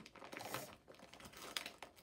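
Faint crinkling and rustling of packaging, with a few light taps, as small toy animal figurines are handled and taken out.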